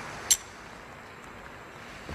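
A single sharp, light click of a pistol's safety lever being flicked off, about a third of a second in, over a faint steady background hum.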